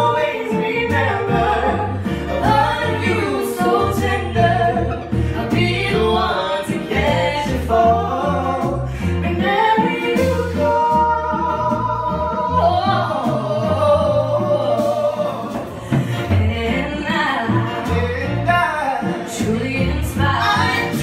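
A man and a woman singing a slow pop ballad as a live duet with band accompaniment, with long held, ornamented vocal runs.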